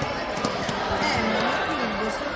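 A futsal ball being played on an indoor sports-hall floor: a few dull thuds of kicks and bounces, under many overlapping voices of players and spectators.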